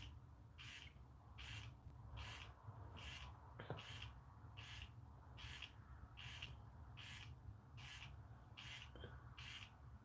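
Faint, evenly spaced short pulses, a little more than one a second, from a small handheld facial skincare device held against the forehead, with one faint click about midway.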